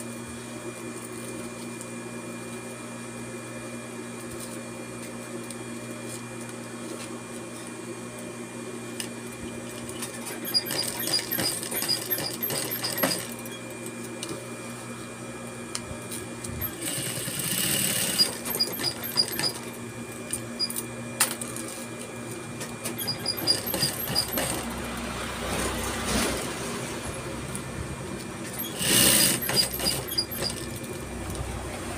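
Industrial lockstitch sewing machine stitching a velcro strip onto an apron strap. Its motor hums steadily, and from about ten seconds in the needle runs in short bursts of rapid, even stitching, starting and stopping several times.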